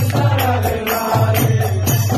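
Devotional kirtan: a group chanting a mantra together over hand cymbals and a drum, keeping a quick steady beat of about four strokes a second.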